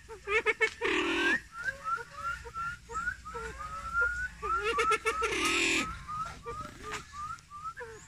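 Bird calls: a run of short rising chirps, two or three a second, broken by louder, harsher calls about a second in and again about five seconds in.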